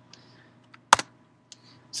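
A single sharp key click about a second in, with a few faint ticks around it: a key press advancing the presentation slide.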